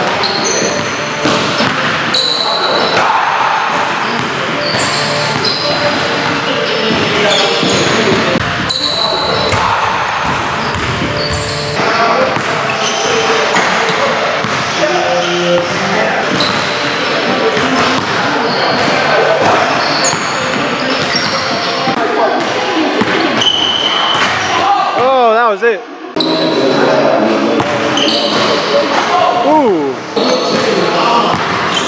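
Basketballs bouncing on a hardwood gym floor, with voices echoing around the hall.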